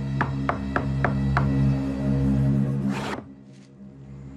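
Film score holding a sustained low drone. Over it come five sharp knocks on a wooden door in the first second and a half, then a brief scraping slide about three seconds in as the door's wooden viewing hatch is pulled open.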